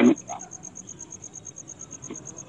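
An insect chirping steadily, a thin high-pitched pulse repeating about eight times a second, over faint room noise.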